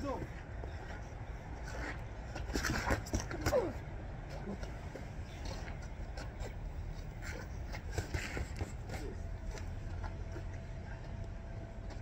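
Boxing glove punches landing on pads: a few short, scattered slaps, in a cluster around three seconds in and a few more about seven to eight seconds in, over a steady low outdoor rumble. A brief voice sounds around three and a half seconds in.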